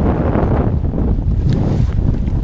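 Strong wind buffeting the microphone: a steady low rumbling blast with no break, and a single brief click about one and a half seconds in.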